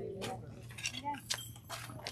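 Quiet talking among a small group, with scattered light clinks and clicks, about five in two seconds.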